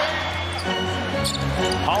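Game sound of a basketball being dribbled on a hardwood court amid arena crowd noise, with low held music notes coming in about half a second in.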